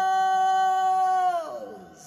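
A man's voice holding one long sung note at a steady pitch, then sliding down and fading out about a second and a half in.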